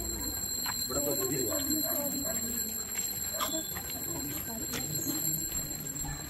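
Indistinct chatter of several people's voices in a moving crowd, with a few light clicks and a faint steady high-pitched whine.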